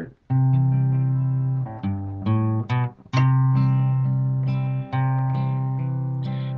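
Guitar playing an introduction: strummed chords left to ring, with a quick run of chord changes about two seconds in, then a long held chord.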